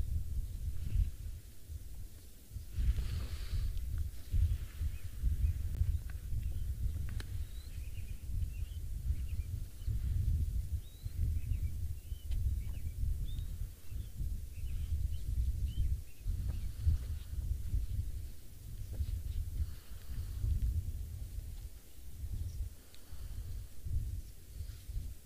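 Wind buffeting the microphone as an unsteady low rumble, with small birds chirping faintly here and there.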